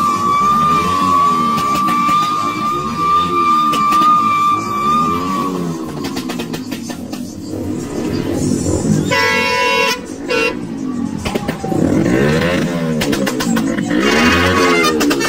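Motorcycle engine revved up and down over and over for the first few seconds, then a matatu's multi-tone air horn sounds in one blast about nine seconds in and a short second blast just after.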